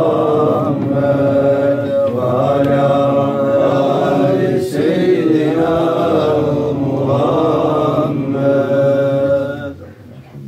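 Men's voices chanting a Sufi zikr in long, drawn-out phrases that rise and fall in pitch, then stopping shortly before the end.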